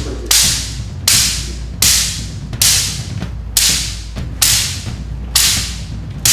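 A bundle of thin bamboo rods slapped against the body in karate conditioning, seven strikes in a steady rhythm about 0.8 s apart. Each is a sharp crack that trails off quickly.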